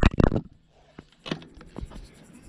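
A small camera dropped onto an asphalt road, clattering: a few sharp knocks in the first half-second. After a brief near-silent gap come a few faint knocks and rubbing as it is handled.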